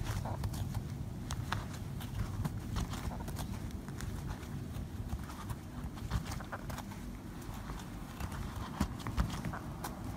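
Crochet hook working thick jumbo cord: irregular small clicks and rustles as the hook catches the cord and pulls it through the stitches, over a low rumble of the hands handling the work.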